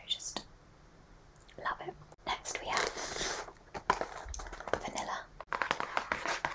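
Soft whispering close to the microphone. Near the end come rapid fingernail taps on a cardboard box held against the microphone.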